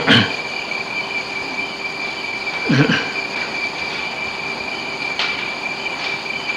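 Steady hiss with a constant high whine and a lower hum, the background noise of an old tape recording. A short low vocal sound comes about three seconds in.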